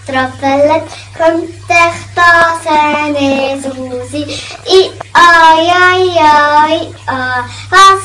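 A young girl singing unaccompanied, in short sung phrases, with one long held note that wavers in pitch around the middle.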